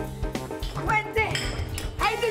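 Background music with a steady low bass line, over clinking and clattering of glasses and dishes at a café table.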